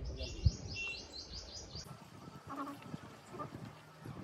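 A bird singing a quick run of about nine high, descending chirps for the first two seconds, with a single sharp tap about half a second in.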